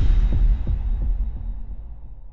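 Deep sub-bass boom from an intro sound effect, throbbing four or five times and fading out.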